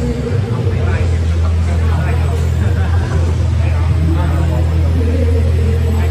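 Steady low rumble with people talking over it; a steady higher hum grows stronger about five seconds in.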